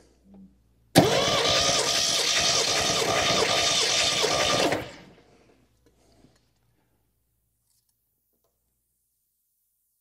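An MGB's four-cylinder engine cranked over by its starter motor for about four seconds during a compression test, pulsing evenly with the compression strokes and not firing. It starts abruptly about a second in and stops just before five seconds.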